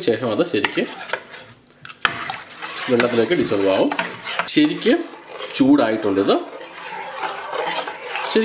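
A spoon stirring a thick homemade fabric starch in an enamel pot, with a few sharp clinks against the pot.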